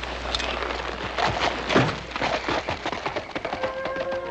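A rapid, irregular run of sharp knocks and clatter, loudest a little under two seconds in, with music coming in near the end.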